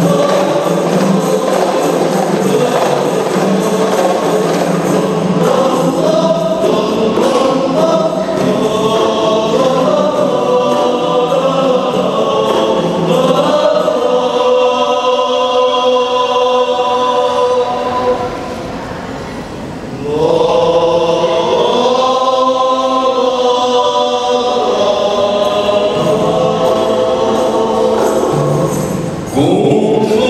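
Group of men singing a qasidah song together in a rebana klasik ensemble, accompanied by rebana frame drums. The singing drops quieter for a moment about two-thirds of the way through, then comes back at full strength.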